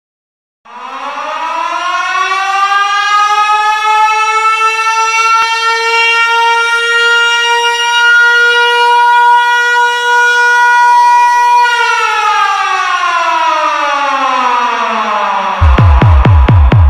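Air-raid siren sound effect opening an electronic dance remix: it winds up over a few seconds, holds a steady wail, then winds down in pitch. Just before the end a heavy, pulsing electronic bass beat drops in.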